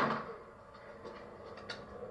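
Body-worn camera audio played back through a TV's speakers. A loud sudden burst right at the start dies away within about half a second, followed by low rustling and a couple of faint clicks near the end.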